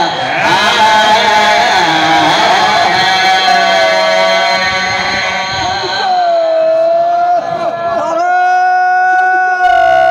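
A man's voice through a microphone and loudspeakers, chanting a Shia qasida in long held notes that waver and bend in pitch.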